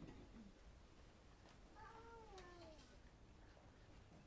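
Near silence in a quiet hall, with a few faint clicks and, about two seconds in, one faint falling squeak lasting about a second.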